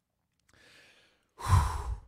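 A man draws a faint breath, then lets out a short, loud exhaled "whew" sigh close to the microphone.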